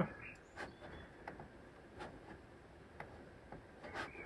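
Several faint, irregularly spaced clicks of a computer mouse being clicked.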